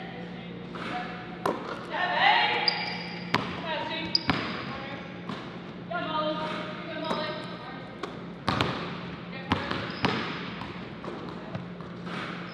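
Basketballs bouncing on a hardwood gym floor, sharp single bounces every second or so, with voices calling out across the gym in between.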